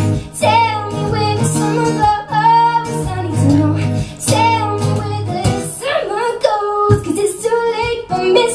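A woman singing a song live with strummed guitar accompaniment, her voice gliding through held notes over steady low guitar chords.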